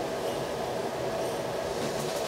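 Train running steadily: a continuous rumble with a steady whine, without breaks.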